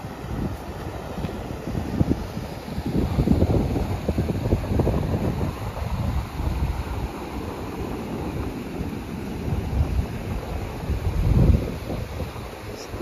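Wind buffeting the microphone: an uneven low rumble that swells in gusts, loudest a few seconds in and again near the end.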